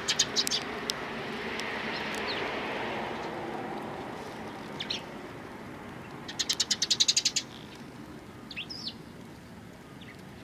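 Eurasian tree sparrows calling as they feed from a hand: a few short chirps, then about six seconds in a loud, rapid run of about a dozen sharp notes lasting about a second, and a last short chirp near the end.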